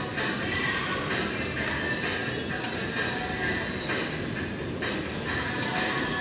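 Background music: a dense, steady track with sustained tones that change about once a second.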